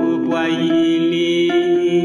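A song's music playing with sustained melodic notes; the melody glides up early on and steps to higher notes about one and a half seconds in.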